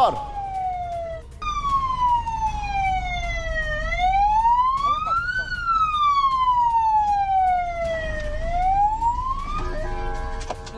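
A siren wailing, its pitch sweeping slowly down and up, with one long fall or rise every two to three seconds and a short break just after a second in. A low rumble runs beneath it.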